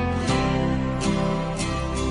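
Slow, gentle music led by acoustic guitar, from an acoustic reggae cover.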